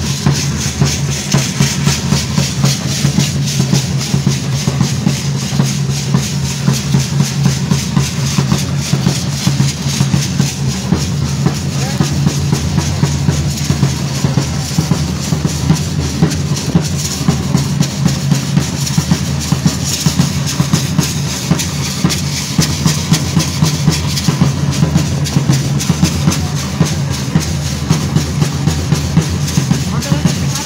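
Drums beating a steady rhythm of about three beats a second to accompany a danza troupe dancing in the street, over a continuous high hiss.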